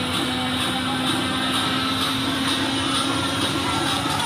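Loud, steady mechanical drone with a constant low hum running throughout, over the general din of a busy fairground.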